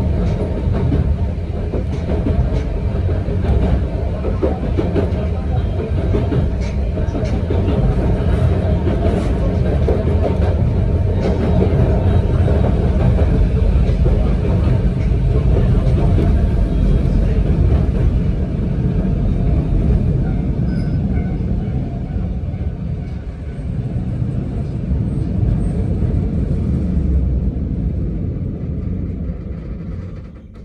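Cabin noise of a narrow-gauge Yokkaichi Asunarou Railway train car under way: a steady low rumble of wheels on rail and running gear. It eases off over the last several seconds as the train slows.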